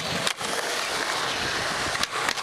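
Skateboard wheels rolling on concrete with a steady grinding hiss, and one sharp click about a third of a second in.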